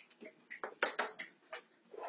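A metal fork clinking and scraping against a ceramic bowl as it whisks a syrupy mixture: a run of light, irregular clicks.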